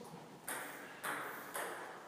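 Table tennis ball bouncing: three sharp, ringing clicks about half a second apart.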